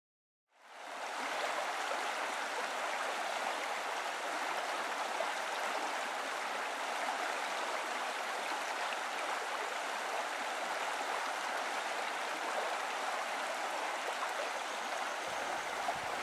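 Running water like a stream, a steady rushing that fades in over the first second and holds evenly.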